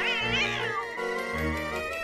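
A domestic cat yowling at a toy tiger: one wavering high-pitched call in the first second that slides down in pitch, over steady background music.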